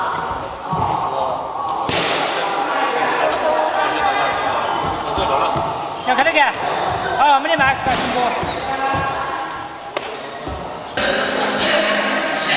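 Repeated thuds of impacts on the floor, such as feet landing and stamping in martial arts practice. Voices sound alongside and are loudest for a couple of seconds in the middle.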